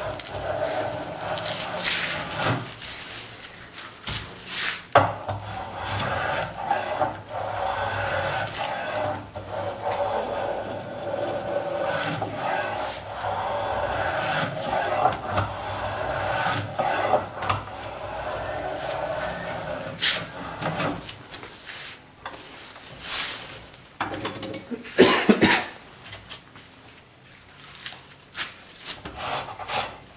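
A small hand plane shaving a beech table leg: a long run of rasping cutting strokes, then a few sharp knocks as tools are handled near the end.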